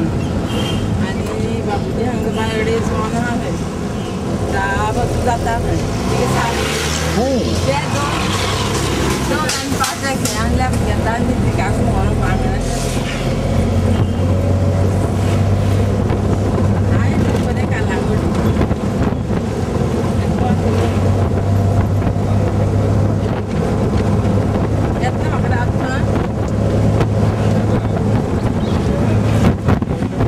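A moving car's engine and road noise heard from inside the cabin: a steady low drone that rises and falls slightly.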